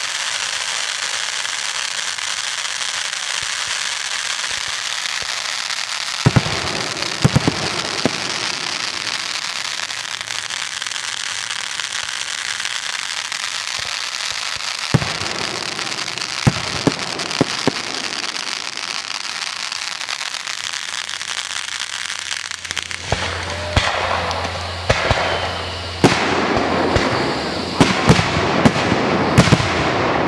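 Consumer fireworks: ground fountains hissing and crackling steadily, broken by sharp bangs of aerial shells bursting, a few around six to eight seconds in and again around fifteen to eighteen, then coming thick and fast in the last several seconds.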